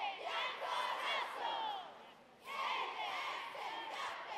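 Girls' cheerleading team shouting a chant together in two phrases, with a short break about two seconds in.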